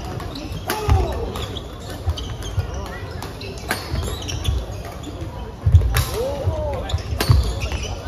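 Badminton doubles rally on an indoor hardwood court: rackets strike the shuttlecock sharply several times, amid thuds of feet and the squeak of court shoes on the floor. Voices carry in the echoing hall throughout.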